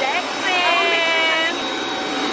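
Jet aircraft engine running on the apron: a steady high whine over a broad rush of noise. About half a second in, a person's high voice holds one drawn-out call for about a second.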